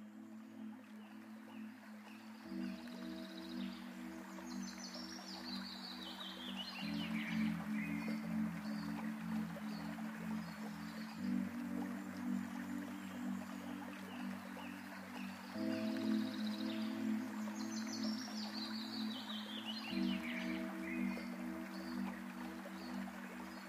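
Calm ambient background music of sustained chords that change every few seconds, with a bird's descending run of high whistled notes over it, heard twice.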